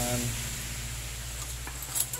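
Steady background hum and hiss, with a couple of faint light clicks near the end as metal motorcycle clutch plates are handled during reassembly.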